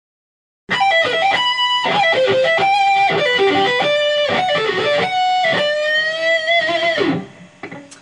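Electric guitar playing a fast sweep-picked arpeggio progression that starts on E minor, quick runs of single notes with pull-offs. It starts about a second in and ends near the end with a note sliding down in pitch.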